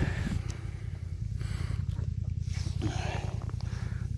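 Polaris RZR 1000 side-by-side's engine running at low revs, a steady low rumble.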